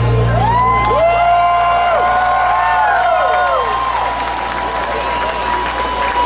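Concert crowd cheering and whooping as a rock song ends, with several long rising-and-falling "woo" shouts over the band's last chord ringing out as a low sustained rumble. A steady high tone, like amp feedback, lingers after the shouts die down.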